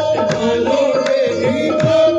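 Live qawwali music: a harmonium holds a steady note over tabla strokes, and the low drum's pitch glides between strokes.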